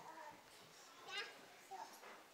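Faint murmur of children's voices and hushed chatter in a large room, with a brief high-pitched child's voice about a second in.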